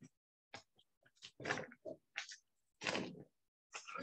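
Paper wrapping on a soft goat's cheese log rustling and crinkling as it is unwrapped by hand, in short irregular bursts with silent gaps between them.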